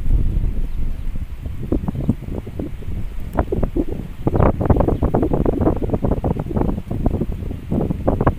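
Wind buffeting the microphone outdoors: a loud, uneven low rumble in gusts, strongest about halfway through.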